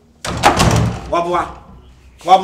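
A wooden door slammed shut about a quarter second in, a sudden heavy bang, followed shortly by a brief shouted voice.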